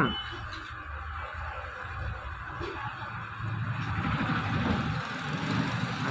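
Street traffic noise: a low, uneven rumble of vehicles going by, growing a little louder in the second half.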